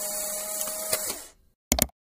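A steady hiss with a faint held tone beneath it, fading out a little over a second in, followed by a brief crackle near the end.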